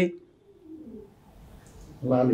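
A pigeon cooing faintly in the background during a pause in speech, with a few low coos in the first second.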